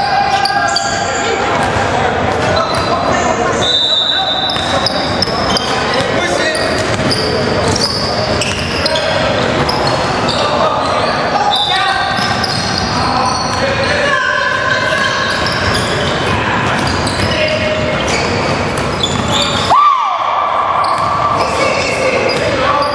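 Basketball game on a hardwood gym court: the ball bouncing and players' voices calling out, echoing in the large hall. Just before the end there is a brief louder sound that falls in pitch.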